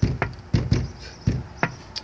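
A hand knocking out a beat on a storefront glass window: about seven sharp knocks in an uneven drum-like rhythm, some in quick pairs.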